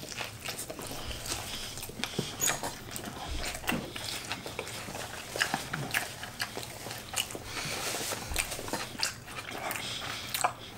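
Two people chewing mouthfuls of a soggy cheeseburger close to the microphones, with irregular wet lip smacks and mouth clicks and a few short closed-mouth hums.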